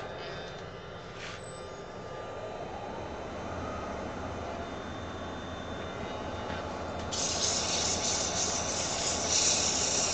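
A wood lathe's motor runs up to speed with a faint rising whine. About seven seconds in, 180-grit sandpaper pressed against the spinning wooden goblet starts a loud, steady hiss.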